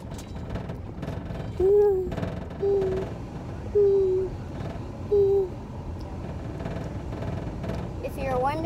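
A child's voice hooting four short, low "hoo" notes, each about half a second long and falling slightly in pitch, over the steady low rumble of a moving car's cabin.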